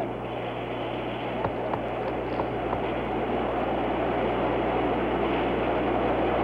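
Steady hiss with a low hum underneath and a few faint clicks near the start: the noise of an open 1969 broadcast audio line between launch control announcements.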